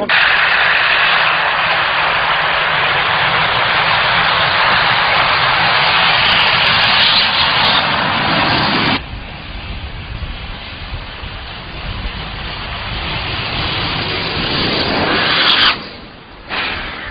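Rocket-propelled bicycle's engine firing with a loud, steady hissing roar. About nine seconds in the level drops abruptly, and a quieter rushing noise follows and slowly builds.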